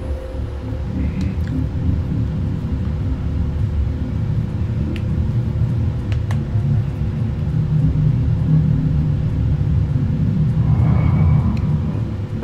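A deep, steady bass rumble from a film soundtrack, with a faint held tone above it, swelling slightly toward the end.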